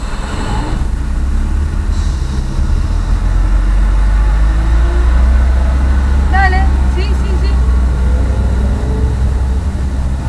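Low, steady rumble of a taxi's engine and road noise heard inside the moving car's cabin, swelling a little louder through the middle. A brief snatch of voice comes about six seconds in.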